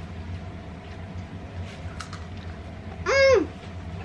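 A short high-pitched vocal exclamation about three seconds in, its pitch rising, holding, then falling, after a quiet stretch with only a faint steady hum.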